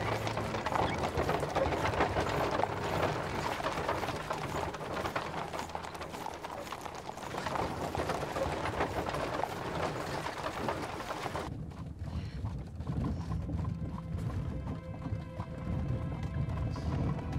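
Many horses' hooves clip-clopping as a procession of horse-drawn carriages moves off, over background music. About eleven and a half seconds in, the hoofbeats and bustle drop away suddenly and the music goes on alone.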